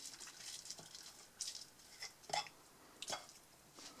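A fork cutting through a crisp-fried potato pancake on a plate, with faint soft crunching and three brief clicks of the fork spaced about a second apart.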